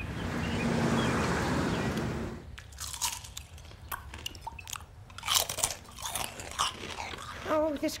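Cereal being chewed loudly with a spoonful at a time, a run of irregular wet crunches that is a deafening racket. Before it, for the first two and a half seconds, a steady rushing noise.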